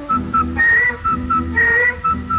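Instrumental break in a Sinhala song: a high melody plays a phrase of two short notes followed by a longer, higher note, heard twice, over a steady bass line.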